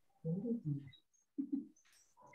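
A person's hesitant low hums, three short 'mm' sounds, while searching for an answer.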